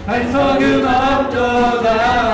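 Church worship team of several voices singing a praise song together, holding long notes, with the band accompanying.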